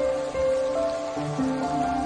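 Soft solo piano music playing a slow, gentle melody of held notes, with a steady rain sound layered underneath.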